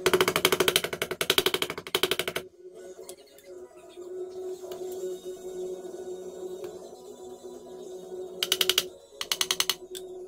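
Rapid run of light hammer taps as fret wire is driven into the fret slots of a guitar fretboard, lasting about two and a half seconds, then a second shorter run of taps near the end. Steady background music plays underneath.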